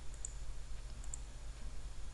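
A few faint, short computer mouse clicks over a steady low hum of background noise.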